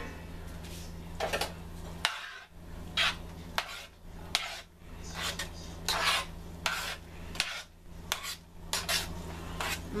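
Metal spoon stirring watery red beans and rice with broccoli in a stainless steel pan, with irregular clinks and scrapes of the spoon against the pan.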